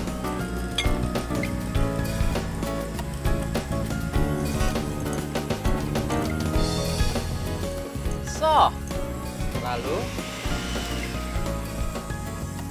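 Background music over an electric hand mixer beating cake batter in a glass bowl at low speed, its beaters clinking against the bowl as the flour is worked in.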